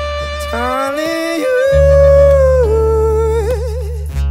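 A male lead vocalist singing a wordless line over the band's bass: the voice slides upward, holds a long high note, steps down, and ends with a wide vibrato.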